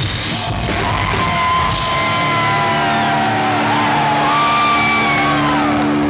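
Live rock band ending a song: the full band plays for about two seconds, then the drums drop out and a held chord rings on with yelling voices over it.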